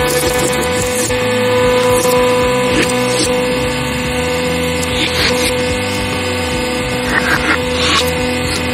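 Hydraulic press pump and motor running with a steady hum as the ram retracts, with a few short crackles of crushed metal near the middle and end.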